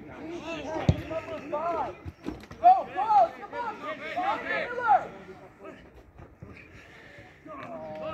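Several voices shouting across a football pitch, in high, rising-and-falling calls, with a sharp thud about a second in. It quietens for a couple of seconds near the end, then the shouting picks up again.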